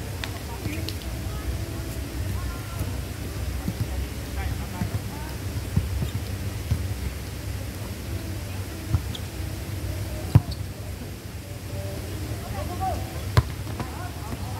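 A ball being struck during an outdoor volleyball game: sharp smacks stand out over scattered players' voices and a steady low rumble. The two loudest hits come about three seconds apart near the end, with fainter ones earlier.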